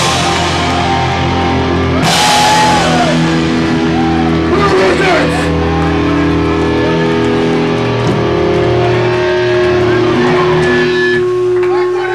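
Live hardcore punk band letting distorted electric guitar and bass chords ring out, with a loud crash hit about two seconds in. Shouted voices rise and fall over the held chords, which drop away near the end.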